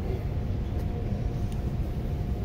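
Steady low rumble of wind buffeting the microphone, with a faint steady hum above it.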